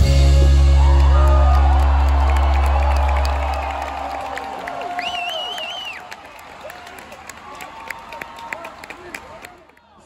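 A rock band's final chord ringing out and fading over the first four seconds, then a large crowd cheering, screaming and whistling, with one loud warbling whistle about five seconds in, the cheering dying down toward the end.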